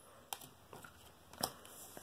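Faint handling of a thick trading card between the fingers, with two short clicks, one just after the start and one about a second and a half in.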